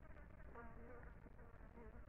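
A flying insect buzzing faintly close by, one pass about half a second in lasting around half a second, and a shorter one near the end.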